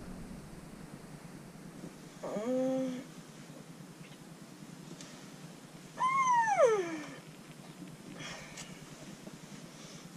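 A woman's wordless vocal sounds while stretching out on a settee: a short hum about two seconds in, then a louder, drawn-out sigh about six seconds in that slides from high to low pitch.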